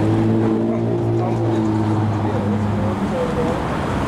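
Street traffic: a motor vehicle engine humming at a steady pitch, dropping away about three seconds in.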